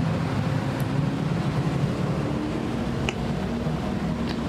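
Steady low rumble of urban traffic noise, with a faint hum.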